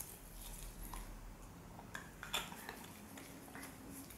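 Faint handling noises from a plastic Jinhao 82 fountain pen and its cap: a few small clicks and taps, a bit over two seconds in, as the pen is lifted from the paper and handled on a desk.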